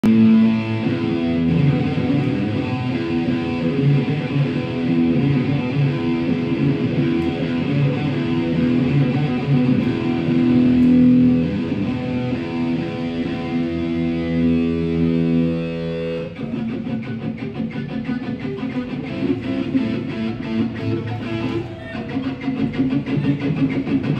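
Electric guitar played live through a concert PA, holding long sustained notes and chords, then switching suddenly at about 16 seconds to a busier, rapidly picked passage.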